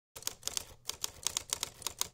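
Typewriter keys clacking in a quick, uneven run of about a dozen strokes, starting a moment in after silence.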